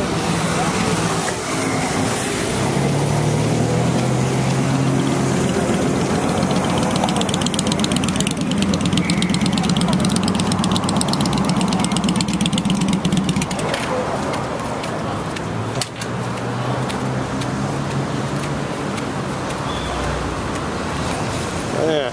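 Motorcycle engines running among city street traffic: a low engine note that shifts in pitch, strongest in the middle, over a steady traffic hum.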